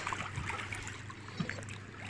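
Shallow seawater softly swishing and lapping around someone's legs as they wade slowly, with a few faint small splashes and a faint steady low hum underneath.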